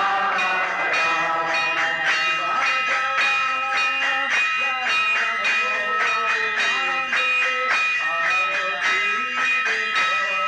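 A group of voices singing a devotional chant, with small hand cymbals striking a steady beat and ringing on.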